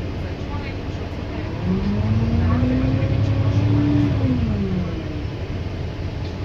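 Alexander Dennis Enviro400 MMC double-decker bus heard from inside the upper deck as it pulls away: over a steady low rumble, a whine rises in pitch and grows louder from about two seconds in. It then drops in pitch and fades again near the end.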